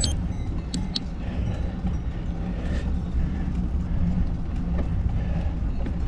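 Steady low rumble of wind and road noise from a moving bicycle ride, with a couple of sharp clicks in the first second.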